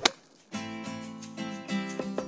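A short sharp click, then after a half-second gap plucked-string background music starts, its notes struck at an even pace.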